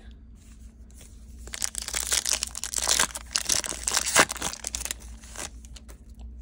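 Plastic foil wrapper of a trading-card pack being torn open and crinkled. The dense crackling starts about a second and a half in and stops shortly before the end.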